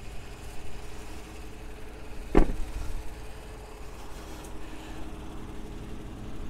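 A vehicle engine idling steadily, with a single thump about two and a half seconds in.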